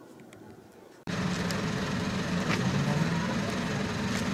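Faint background for about a second, then a sudden cut to a motor vehicle engine running steadily close by, with a low hum.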